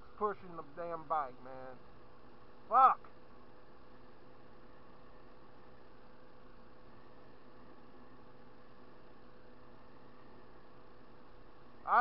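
Faint steady hum of a 2014 Yamaha Zuma 50F scooter's 49cc four-stroke single under way on a nearly empty tank. A man's voice is heard briefly at the start, and one short loud vocal sound comes about three seconds in.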